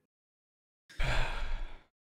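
A man's breathy sigh, an audible exhale lasting under a second, starting about a second in after dead silence.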